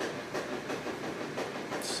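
Hands pressing and smoothing wet newspaper papier-mâché strips onto a chicken-wire frame: soft, repeated rustling and rubbing of the damp paper.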